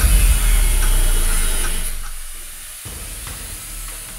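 Angle grinder with a cut-off disc cutting through car-body sheet steel, a hissing grind over background music. It fades out over the second half.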